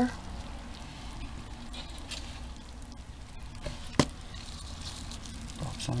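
Gloved hand digging through damp worm bin bedding, a soft, uneven rustling and crackling, with one sharp click about four seconds in.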